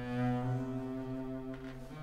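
Double bass played with the bow: one long, low sustained note, changing to a new note near the end.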